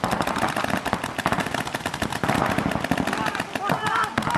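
Several paintball markers firing in rapid streams at once, a dense run of sharp pops with no break.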